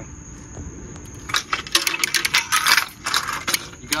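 Irregular light metallic clinks and rattles of heavy fishing tackle being handled, starting a little over a second in.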